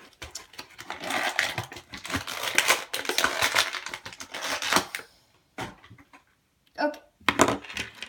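Plastic toy packaging crinkling and crackling as tiny plastic toy weapons are popped free, ending in a sharp snap; then a few separate clicks and a knock on the table.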